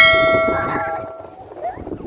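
A single bright bell ding sound effect, the notification-bell chime of a subscribe-button animation, struck once and ringing down over about a second and a half.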